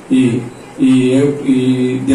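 A man speaking into a handheld microphone: a short phrase, then a longer one starting just under a second in, with long, evenly held vowels.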